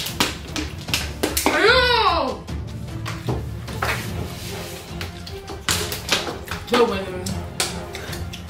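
Background music under hand-eating sounds: short clicks and smacks from chewing and from fingers in the food. About two seconds in comes one sound whose pitch rises and then falls, and a spoken "No" comes near the end.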